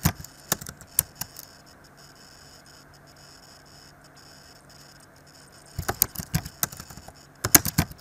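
Computer keyboard keys clicking as code is typed: a few keystrokes in the first second, a pause of about four seconds with only a low steady hum, then a quick run of keystrokes near the end.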